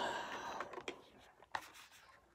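Faint scratching and rubbing of things being handled, with one sharp click about one and a half seconds in.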